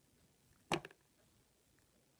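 A quick cluster of three or four sharp clicks, the first the loudest, a little under a second in, from fingers handling rubber loom bands and a small plastic clip.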